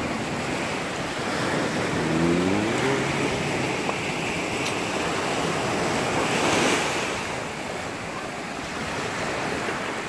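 Small waves washing onto a sandy beach: a steady rush of surf, with wind on the microphone, swelling a little after six seconds. A brief faint voice-like hum about two seconds in.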